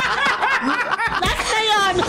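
Several people laughing together, with voices overlapping; a high-pitched, rapidly pulsing laugh comes near the end.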